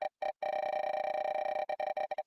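Online spinning name wheel's tick sound effect as it spins. The ticks come so fast that they blur into a steady pitched tone, then separate and slow near the end as the wheel winds down.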